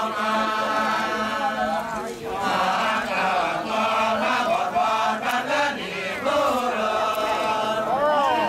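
Kecak chorus: many male voices chanting together, holding long, sustained notes with a short break about two seconds in.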